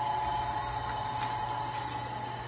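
Steady motor hum from the rotisserie drive turning a lechon spit over charcoal, an even drone with a constant whine, with a few faint clicks.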